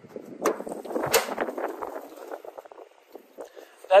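Latch of a horse trailer's metal side door clicking twice, then the door being opened with a short rattling clatter.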